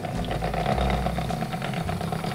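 Electric hand mixer running steadily, its beaters whisking a syrupy butter-and-sugar mixture with a freshly added egg in a bowl.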